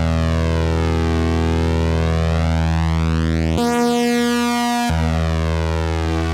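Roland GR-33 guitar synthesizer, played from a Godin LGX-SA's 13-pin pickup, sounding a held synth chord with a slow sweeping whoosh through its tone. Just past the middle, the low notes cut out for about a second while a higher chord sounds, then the full chord returns.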